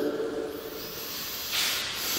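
A soft, steady hiss that grows louder about a second and a half in.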